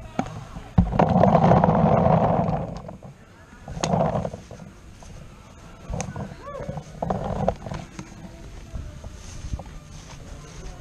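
Voices shouting, with the loudest call starting about a second in and lasting about two seconds, shorter calls around four and seven seconds in, and a few sharp clicks.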